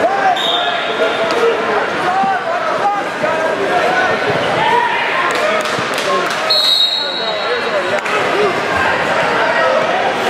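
Crowd of spectators and coaches in a large hall, many voices shouting and chattering over one another. Two short, shrill whistle blasts cut through, one near the start and one about two-thirds of the way in.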